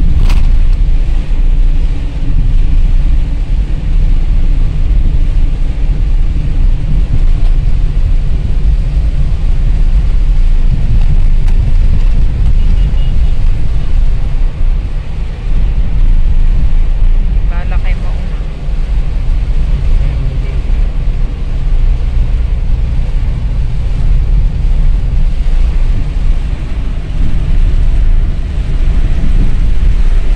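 Car cabin noise while driving through heavy rain: a loud, steady low rumble of road and engine noise with rain on the car.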